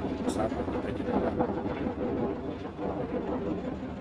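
Steady machinery drone inside a ship, with a few brief fragments of a man's voice over it.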